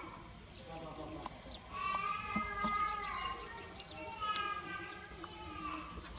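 A dog whining in two long, high-pitched cries, one about two seconds in and one about four seconds in. A few sharp clicks sound between them.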